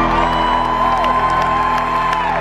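Live concert music ending on a held chord, with the crowd starting to whoop and cheer.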